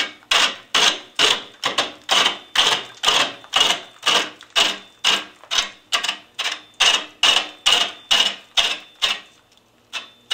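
Turning tool cutting a big out-of-round big-leaf maple root blank on a slow-running wood lathe: a sharp chop nearly three times a second as the tool meets the high side of the blank on each turn. The chopping stops briefly near the end, then starts again.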